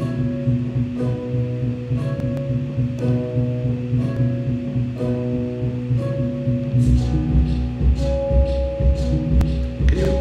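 Electronic music generated live from geometric shapes turned into MIDI notes and played through Ableton Live: held, plucked-sounding synth notes over a sustained low chord, with new notes starting about every half second to a second. A deep pulsing bass comes in about seven seconds in.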